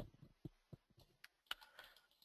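Faint, scattered clicks of a computer mouse and keyboard: one sharper click at the start, then about half a dozen soft clicks.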